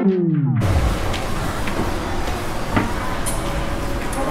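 Background music slides down in pitch, like a record slowing to a stop, and cuts off about half a second in. It gives way to the steady hubbub of an indoor shopping mall: air handling and distant voices with a few faint knocks.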